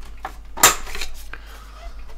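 Plastic clicks and knocks from a Reflexion portable DVD boombox's battery compartment cover being taken off its underside, about five short hits with the sharpest snap a little over half a second in.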